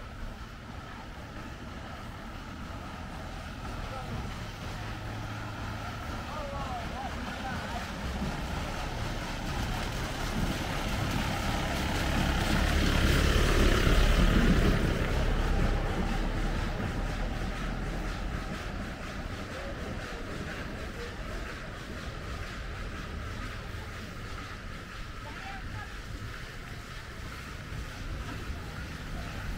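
A large motor vehicle passes close by on a dirt road: its engine and tyres grow louder, are loudest about halfway through, then fade away.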